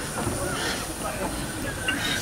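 Vale of Rheidol narrow-gauge 2-6-2T steam locomotive No. 1213 running slowly past at close range, wheels rolling on the rails, with voices in the background.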